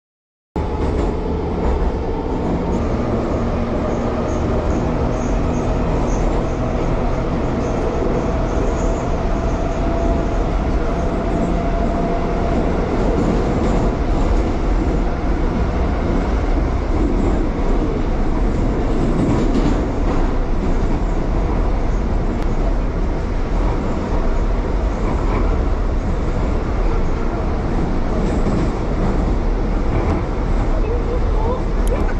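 Interior sound of a moving metro train carriage: a steady, loud rumble of wheels and running gear. It cuts in suddenly about half a second in, and a faint whine is held through part of it.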